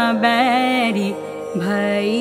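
A female vocalist sings a thumri, holding long notes that waver and bend in ornamented turns. She drops to a lower held note past the middle, over a steady drone accompaniment.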